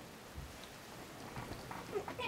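A domestic cat gives a short, faint whining call near the end, with a soft thump about half a second in as it shifts on the bedding.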